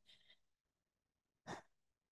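Near silence, broken once, about one and a half seconds in, by a short, faint breath.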